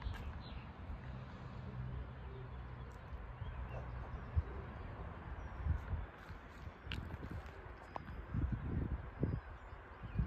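Quiet outdoor background after the sirens have stopped: a low rumble with occasional soft bumps, and a few faint bird chirps.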